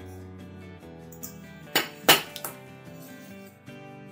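Background music with steady tones, and two sharp metallic clinks about halfway through, a third of a second apart, as of a stainless steel bowl being knocked.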